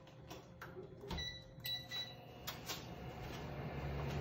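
Induction cooktop being switched on: a few clicks and short high electronic beeps from its control panel, then a low steady hum that builds near the end as the hob starts heating the pan of water.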